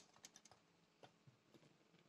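Near silence, with a few faint light clicks of a stainless-steel idli plate stand being handled, in the first half second and again about a second in.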